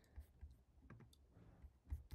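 Near silence with a few faint, separate clicks of a laptop being worked; the loudest comes just before the end.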